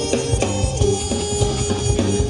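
Live jazz band playing, with drum kit, piano and bass; held pitched notes over a continuing drum beat.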